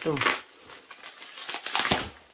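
Plastic bubble wrap crinkling as it is pulled and cut off tightly wrapped plant pots, in bursts: one just after the start and a louder cluster near the end.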